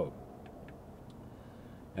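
Low background noise with a couple of faint ticks in the first second, from a finger pressing the mode button on a Mercury SmartCraft gauge to step its display; the boat's engine is off.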